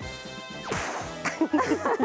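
Background music, with a short noisy burst a little under a second in, then a woman laughing near the end.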